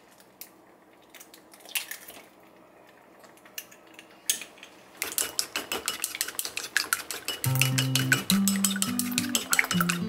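An egg cracked into a small ceramic bowl, then wooden chopsticks beating it, a fast run of clicks against the bowl from about halfway. Music with low plucked notes comes in over it near the end.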